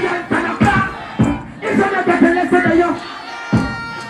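A dancehall performer's voice through the stage sound system, chanting over music, with crowd noise. The voice drops out about three seconds in, leaving held musical tones.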